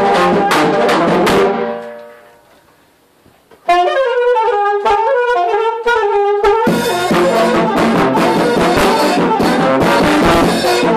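Brass band with large bell-front horns, bass drum and cymbal playing together, fading away over the second and third seconds. A brass melody then sounds alone without drums for about three seconds, and the full band with drums comes back in sharply near the seventh second.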